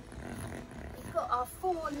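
Child's hand drill being cranked, its bit grinding into a wooden log with a rough rasping. A woman starts speaking about a second in.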